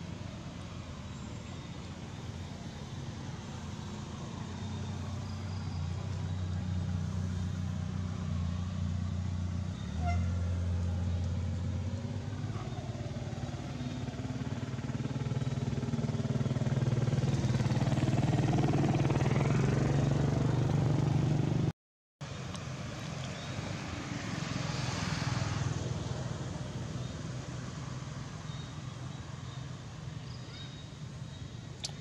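Low, steady engine hum of passing motor traffic. It slowly grows louder to a peak about two-thirds of the way through, drops out for a moment, then swells once more and fades.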